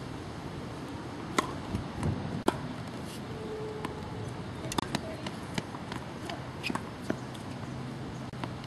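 Tennis ball being hit with rackets and bouncing on a hard court: a series of sharp pops at irregular intervals through the rally.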